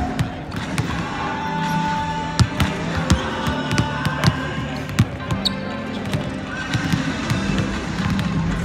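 Several basketballs bouncing irregularly on a hardwood court, in quick dribbles and single bounces, in a large arena. Music plays in the background throughout.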